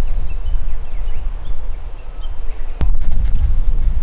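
Outdoor ambience: a loud low rumble of wind buffeting the microphone, with faint bird chirps and one sharp click near the end.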